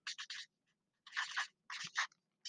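Pen scratching on paper in short strokes, writing a note.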